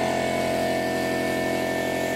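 A generator and an air compressor running steadily, an even machine drone with no change in pitch or level.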